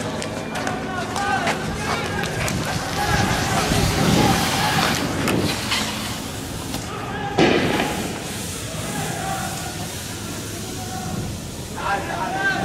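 Men shouting in the street, with a few sharp bangs; the loudest bang comes about seven and a half seconds in.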